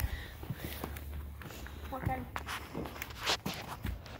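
A horse's hooves striking soft arena footing, a muffled step about every half second.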